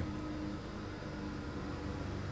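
Room tone: a steady low hum with faint hiss and no distinct event.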